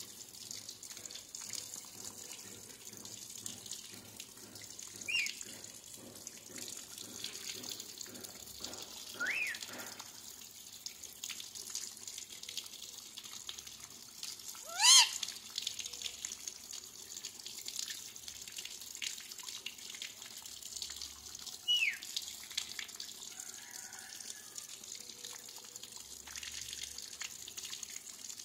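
A caged green parakeet giving a few short, gliding squawks, four in all, the loudest about halfway through, over a steady hiss like running water.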